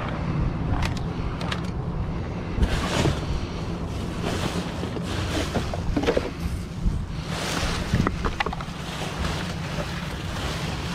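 Plastic trash bags, cardboard and paper rustling and crackling inside a metal dumpster as they are pushed aside by hand, with scattered short knocks, over a steady low rumble of wind on the microphone.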